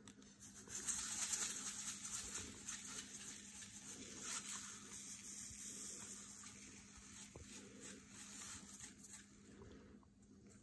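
Salt shaken from a plastic shaker onto ice cubes in a plastic tub: a soft, grainy patter of falling grains. It starts just after the beginning, is heaviest about a second in, and thins out toward the end.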